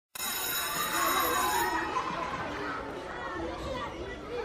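Song intro: a high bell-like ringing that stops about two seconds in, over indistinct murmuring voices.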